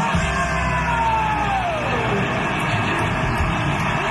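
Live rock band ending a song: a low rumble of bass and drums under one held note that slides steadily down in pitch over about two seconds.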